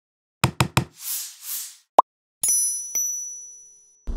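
Logo sting sound effects: three quick knocks, two soft whooshes, a short pop, then a bright chime struck twice that rings and slowly fades.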